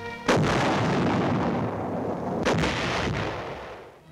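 Heavy artillery fire from a large coastal gun: a sudden blast about a third of a second in with a long decay, then a second blast about two and a half seconds in that fades away.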